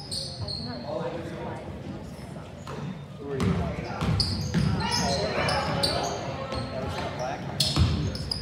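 Basketball being dribbled on a hardwood gym floor, with short high sneaker squeaks and the voices of players and spectators echoing in the hall; it all gets louder about halfway through.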